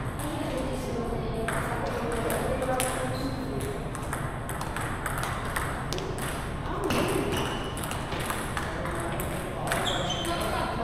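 Table tennis balls clicking off paddles and tables in a quick, irregular patter from several rallies at once. People are talking in the background.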